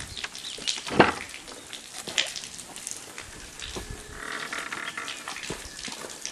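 Wooden farm gate being unlatched and swung open: a sharp wooden clack about a second in, a second knock a second later, and small clicks and rustles as it is pushed through.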